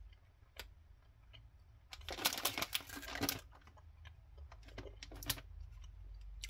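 A person chewing a gummy sweet: two bursts of quick clicky mouth sounds, the first about two seconds in and the longer of the two, the second shorter, near five seconds.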